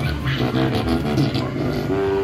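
Whoopee-cushion pads of an interactive musical game being pressed, each sounding a low note at its own pitch, in a quick run of changing notes.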